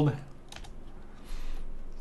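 A few computer keyboard keystrokes clicking about half a second in, followed by a fainter short noise later on.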